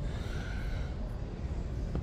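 Steady background hiss and low hum of room noise between sentences, with no distinct event.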